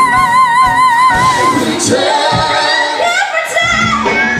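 A woman belting a sustained high B5 with wide vibrato, cut off about a second and a half in. A second woman's voice then sings a phrase that climbs steeply in pitch toward a high belt.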